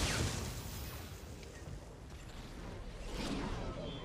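Sound effects from an animated episode: an energy-blast whoosh at the start that fades off, then a second rising whoosh about three seconds in.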